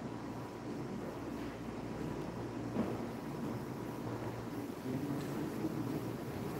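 Quiet room noise in a large church hall: a steady low hum with faint scattered movement as people walk about, and a small knock about three seconds in.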